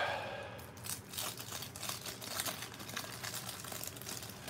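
Cellophane wrapper of a 1984 Fleer baseball card cello pack crinkling and tearing as it is pulled open by hand, a fast run of small crackles.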